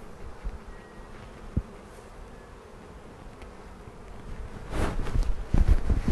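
Honeybees buzzing steadily around an open hive frame, a colony of European honeybees. There is a single sharp knock about a second and a half in, and louder bumps and rustling near the end.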